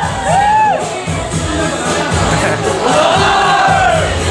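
The end of a K-pop dance track, a short sung phrase repeating over the beat, followed by the audience cheering and shouting once the number finishes, the cheering swelling about three seconds in.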